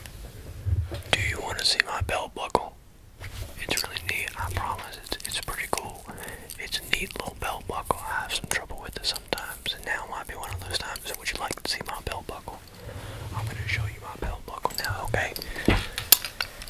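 A man whispering close to the microphone, the words not clear, with many short sharp clicks scattered through it.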